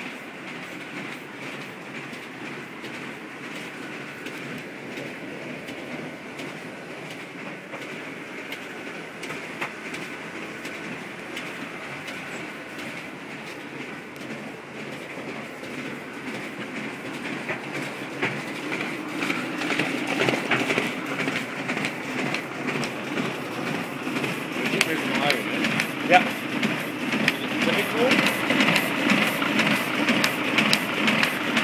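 Sheet-fed printing machine running, with a rapid, even clatter of sheets being fed and stacked. It grows louder over the second half as the machine comes near.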